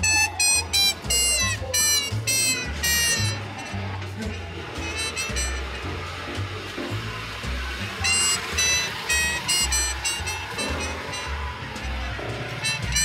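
Jazz music with a walking bass line under a bright lead melody that plays in two phrases, one at the start and one about eight seconds in.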